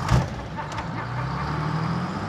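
A truck engine starting with a low thump, then running steadily.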